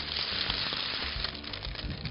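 Baking paper dragged across a metal baking tray with a heavy baked puff-pastry pie on it: a steady rustling scrape. Quiet background music under it.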